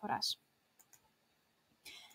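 A woman's voice ends a sentence, then a pause of near silence broken by a few faint clicks from a computer as the presentation slide is advanced.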